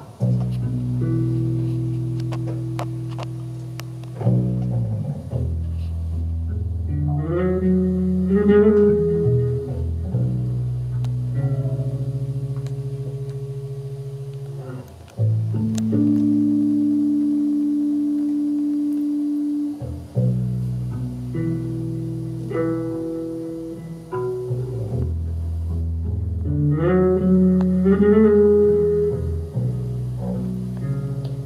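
Electric bass and keyboard playing a slow instrumental passage: held low chords that change every four to five seconds, with runs of plucked higher notes over them about eight seconds in and again near the end.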